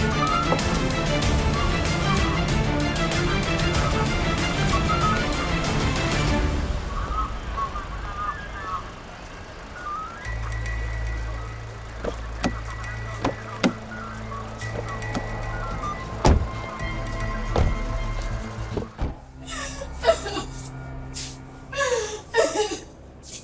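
Music: a loud, dense track for the first six seconds or so, then quieter music with a steady low drone and a few scattered knocks.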